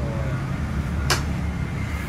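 A steady low hum, with one short sharp sound about a second in.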